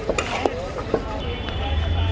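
Metal spatulas clanking and scraping against a large metal wok while stirring pasta, with three sharp clanks in the first second.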